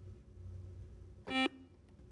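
Quiz-show buzzer giving one short electronic tone, about a quarter second long, a little past halfway, over a low steady studio hum.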